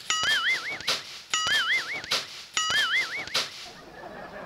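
Cartoon-style comic sound effect: a whistling tone that slides up and then wobbles up and down, played three times in a row, identical each time, about a second and a quarter apart.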